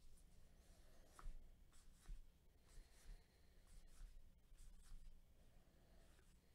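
Faint soft rustling and scraping of trading cards sliding against one another as gloved hands flip through a stack, in short scattered strokes over near silence.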